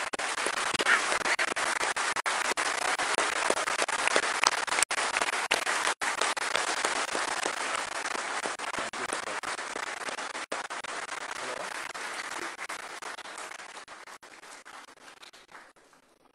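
A crowd applauding steadily with many hands, the applause dying away over the last few seconds.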